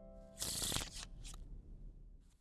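Sound effect of a deck of playing cards being riffled: a quick burst about half a second in, followed by a few lighter card flicks. A held musical chord dies away just as it starts.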